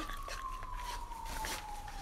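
A faint single tone sliding slowly and steadily down in pitch, with a few soft clicks.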